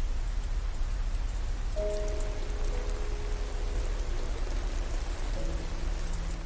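Steady heavy rainfall on a film soundtrack. Soft, held music notes come in faintly about two seconds in.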